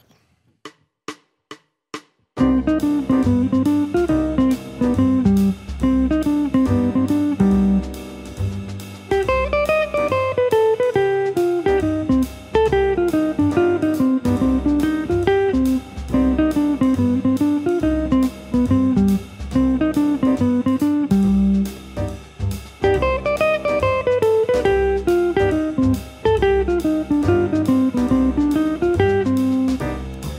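Archtop jazz guitar, an Eastman, picked single notes in a flowing line that climbs and falls, playing a C jazz melodic minor lick over a backing track with drums and a static C minor-major seventh chord. A few count-in clicks come first, and the band comes in about two seconds in.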